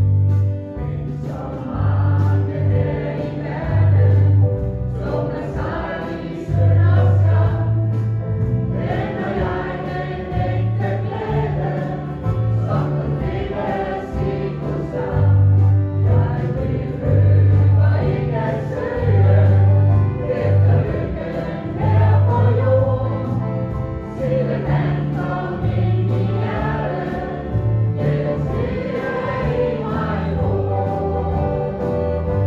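A gospel song sung by a choir over a sustained bass line, the bass notes changing every second or so.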